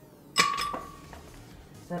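An ice cube dropped into a glass blender jar: one sharp clink about half a second in, ringing briefly as it dies away, followed by a fainter tap.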